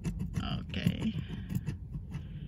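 Plastic scratcher scraping the coating off a scratch-off lottery ticket in quick repeated strokes, over a low steady hum.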